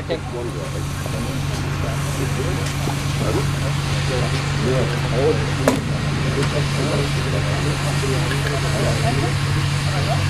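A steady low machine hum under quiet, indistinct talking, with a single sharp click a little over halfway through.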